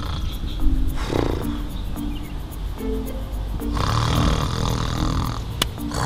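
A man snoring: a short snore about a second in and a longer one from about four seconds in, over light comic music.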